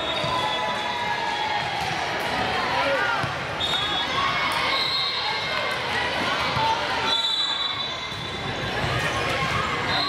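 Youth volleyball rally in a gym: ball contacts and players' and spectators' voices, with short, high, shrill tones several times.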